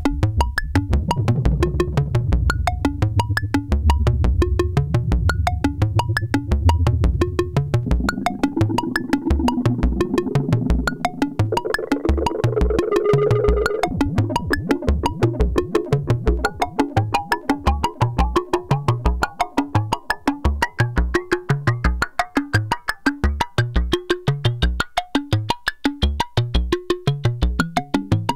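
Eurorack modular synthesizer patch playing a fast, clicky sequenced pattern. Bands split off by a Make Noise FXDf fixed filter bank run through an Echophon delay and are mixed back with the unfiltered signal. The sound shifts as it goes: a heavy low drone at first, a pitched mid-range swell around the middle, then short bass pulses about three a second.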